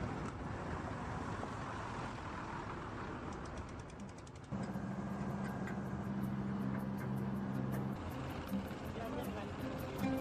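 Busy dockside ambience with truck engines running. About four and a half seconds in it turns to a steady low engine hum that fades out about three seconds later.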